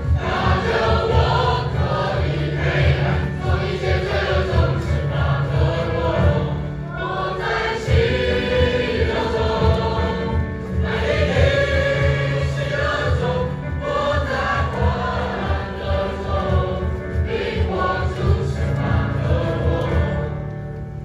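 Mixed school choir of boys and girls singing a Christian hymn in chorus, phrase after phrase with only brief breaks between them.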